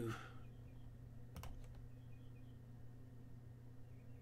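A couple of faint computer mouse clicks about one and a half seconds in, over a steady low electrical hum.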